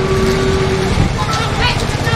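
Motorcycle engines running, with men shouting over them; a steady tone is held for about the first second.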